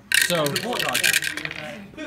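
Dice rattling and clattering onto the table for about a second: a roll to dodge incoming shots in a tabletop miniatures game.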